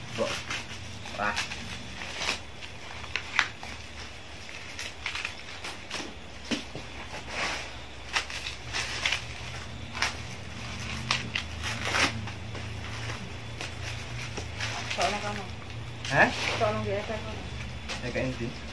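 Dry corn husks being torn off dried ears of corn by hand: irregular crackling, rustling and sharp clicks throughout.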